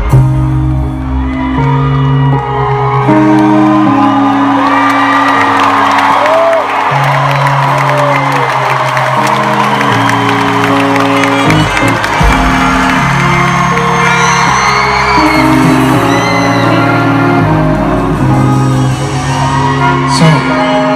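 Live music of slow, sustained keyboard chords that change every second or two, with a concert crowd cheering and whooping over it.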